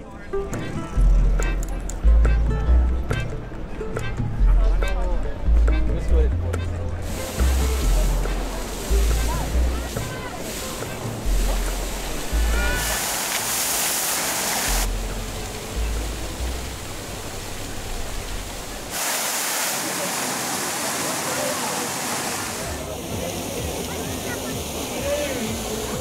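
Music with a heavy bass line in short pulsing notes, mixed with the steady rushing hiss of fountain jets and the murmur of a crowd; the bass stops about three quarters of the way through, leaving the water and voices.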